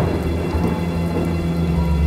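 Rain with a roll of thunder that breaks in right at the start and fades into steady rainfall, over low held notes from the slowed song.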